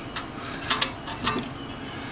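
A handful of short, light clicks and knocks as a rear disc-brake caliper is worked loose by hand and lifted off its bracket and rotor.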